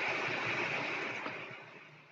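Steady background hiss of the recording, starting with a click and fading away over about two seconds.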